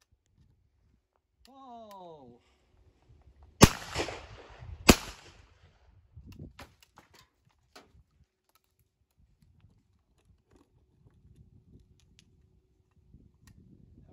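A short shouted call, then two shots from a 12-bore side-by-side hammer shotgun about a second apart, one barrel after the other. A few light metallic clicks follow as the gun is worked and reloaded: with non-rebounding locks the hammers have to be drawn back to half cock before the gun can be opened.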